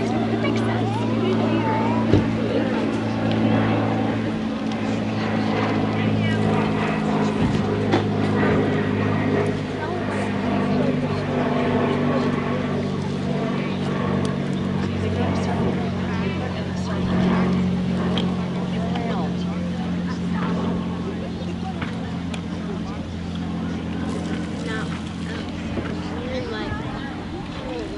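A steady, low motor hum that shifts in pitch a few times, with faint voices talking behind it.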